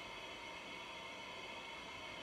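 Faint steady hiss of room tone in a pause between spoken sentences.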